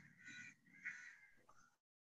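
Near silence, with two faint short sounds in the background, about a quarter second in and about a second in. The sound then cuts out completely just before the end.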